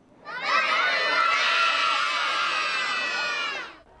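A group of young children shouting together in one long, held cheer that starts a moment in and stops just before the end.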